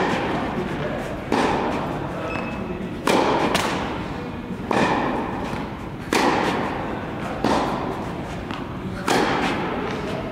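Tennis rally: a ball struck by rackets about eight times, roughly one hit every one and a half seconds. Each hit echoes in a large indoor tennis hall.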